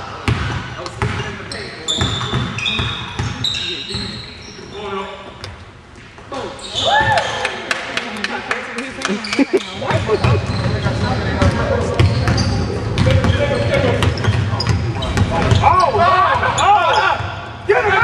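Basketballs bouncing on a gym's hardwood floor, many sharp bounces in a large hall, with players' voices calling out about seven seconds in and again near the end.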